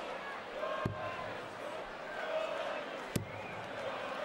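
Two darts thudding into a bristle dartboard, a couple of seconds apart, over a steady murmur from a large arena crowd.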